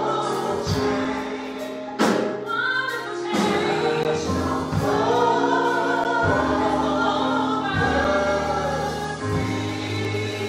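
A gospel choir singing with keyboard accompaniment in long, sustained chords, with a sharp percussive hit about two seconds in.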